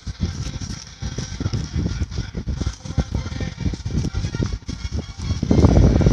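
Plastic courier mailer and yellow padded paper envelope crinkling and rustling in a run of short crackles as they are pulled open by hand, with a louder burst of handling noise near the end.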